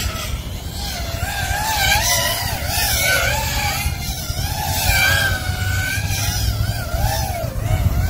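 FPV quadcopter's four DYS Sun-Fun 2306-1750kV brushless motors on a 6S battery spinning 5.1-inch props, whining in flight. The pitch rises and falls constantly with the throttle. A steady low rumble runs underneath.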